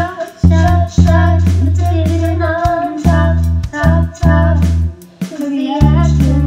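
A child singing a pop song over a backing track of bass and drums, the sung melody wavering over steady deep bass notes.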